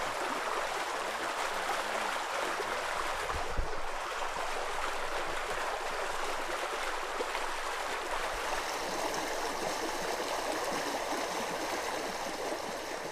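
Running water flowing steadily.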